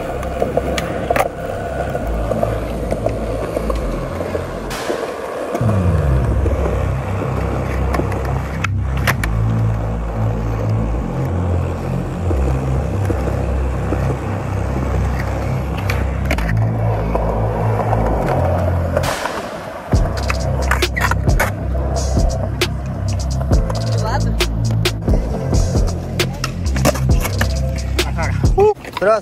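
Skateboard rolling on concrete, with sharp clacks of the board popping and landing during a flip-trick attempt, most of them in the last eight seconds, over background music with a heavy stepping bass line.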